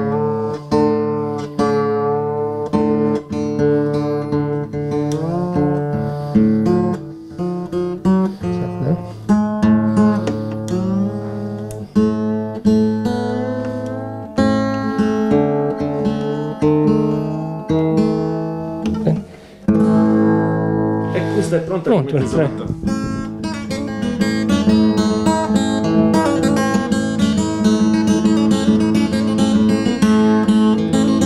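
Large Sardinian folk guitar strummed in repeated chords while the player turns its tuning pegs, so the string pitches slide up and down as he retunes it away from standard tuning. In the last few seconds the strumming settles into steady, even chords.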